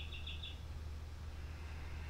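A small bird gives a short, rapid run of high chirps near the start, over a steady low hum.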